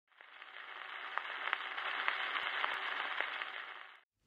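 Surface noise of a 1953 Decca 78 rpm shellac record in the lead-in groove: a soft hiss with scattered clicks and crackles. It fades in over the first second and stops just before the end.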